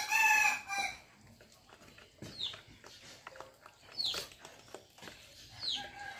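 A rooster crowing once at the start, loud and about a second long. It is followed by a few faint, short, falling chirps from birds, one every second or two.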